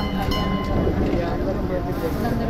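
A woman speaking into reporters' microphones over a heavy low rumble of background noise. A thin high steady tone sounds under her voice and stops about two-thirds of a second in.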